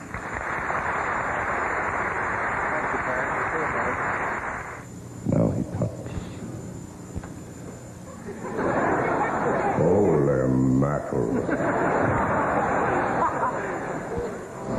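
Television studio audience applauding for about five seconds, then a short voice. From about eight and a half seconds in there is a second stretch of applause mixed with laughter and voices.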